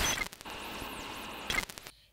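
Television static hiss from an old tube TV set being tuned. It starts with a sudden loud burst, settles into a steady hiss with faint high sweeping whistles, flares again about a second and a half in, and then cuts off.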